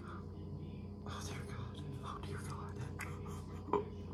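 Faint clicks and rustling as the screw cap of a small hot sauce bottle is twisted off, while a person whispers quietly. A short, sharper sound comes near the end.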